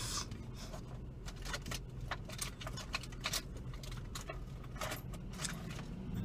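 Scattered small clicks and rustles of a hand rummaging down beside a car seat, searching for a lost ring, over the car's low steady hum.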